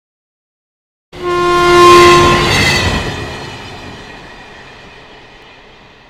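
Train horn blowing as a train passes, starting suddenly about a second in. The horn stops after about a second and a half, and the train's rumble then fades steadily away.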